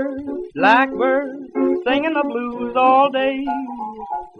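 Music from an old 1920s popular-song recording: a male crooner singing the opening line over plucked-string accompaniment.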